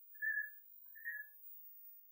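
Two faint, short, high whistled notes about a second apart, each holding one steady pitch.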